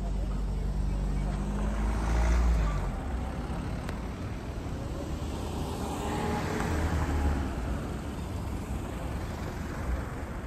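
Street traffic in a town square: a car engine running close by, its pitch dropping as it fades about three seconds in, then another vehicle passing about six to seven seconds in, with voices in the background.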